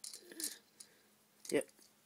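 Faint clicks and light knocks of small plastic Lego pieces being handled by hand, with a brief spoken word about one and a half seconds in.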